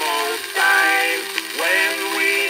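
A 1903 Victor Monarch 78 rpm shellac disc playing an acoustic-era recording of male voices singing a music-hall song chorus. The sound is thin, with no bass, over a steady surface hiss.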